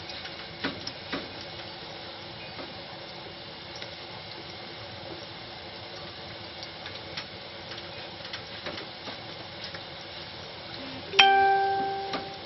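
Ripe banana slices frying in hot oil in a large wok: a steady sizzle with scattered light clicks. Near the end a sudden loud ringing tone sounds and fades over about a second.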